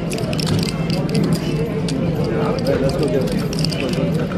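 Poker card-room ambience: a steady murmur of background chatter with frequent small clicks of clay poker chips being handled and stacked at the table.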